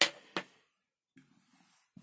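Two sharp plastic clicks about a third of a second apart, from handling a hand-held 3D-printed power bank and its plugged-in USB LED lamp.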